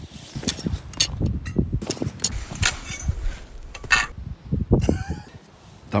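Rustling of a military poncho shelter and a run of sharp clicks and knocks as it is handled close to the ground; its upright pole is knocked down.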